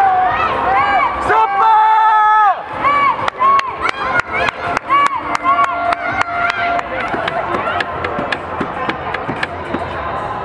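Spectators shouting and chanting at a youth football match, with one long held shout about one and a half seconds in and a run of sharp hand claps between about three and seven seconds in.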